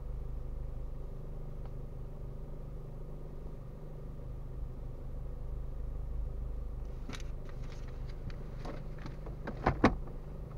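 Car engine idling, a steady low hum and rumble heard inside the cabin of a stationary car. A few sharp clicks and knocks come about seven seconds in, and louder ones near the end.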